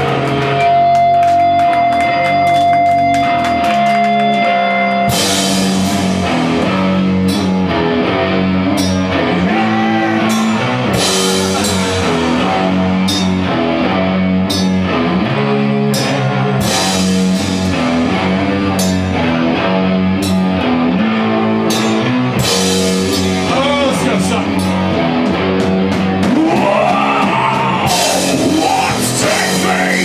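A heavy rock band playing live and loud at a slow, trudging pace. A steady guitar tone rings for the first five seconds, then the full band comes in: distorted guitars and bass under drums, with cymbal crashes every second or two. Vocals join near the end.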